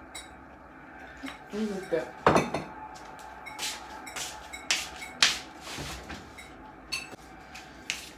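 Kitchen clatter: a string of clinks and knocks of dishes and cutlery being handled, with short rustling noises in between, loudest about two seconds in.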